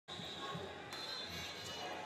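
Echoing hubbub of a large tournament hall: distant voices and scattered thumps, with a sharp click about a second in and a faint steady high tone underneath.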